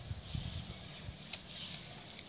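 Faint handling sounds with a couple of small clicks as a coaxial cable's F-connector is screwed onto a handheld ClearSat satellite finder, over a faint steady background.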